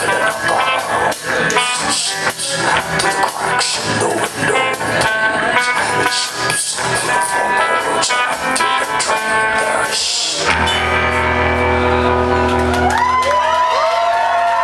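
Live rock band playing the instrumental ending of a song with electric guitars, drums and keyboard. The drums stop about ten seconds in and the band lets a final chord ring, with gliding bent notes near the end.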